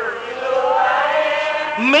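Buddhist monk's voice chanting, holding one long drawn-out note that rises a little and then sinks.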